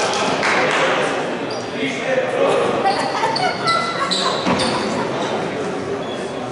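Indistinct voices of players and spectators echoing in a sports hall, with several short high squeaks, like basketball shoes on the hardwood court, mostly in the middle of the stretch.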